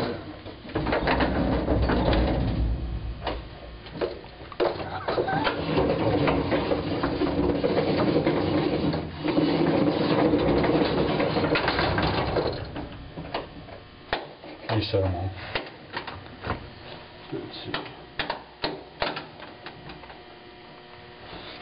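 Freight elevator in a missile silo running with a steady hum and rattling, clicking mechanism. About twelve seconds in it drops away to scattered clicks and knocks.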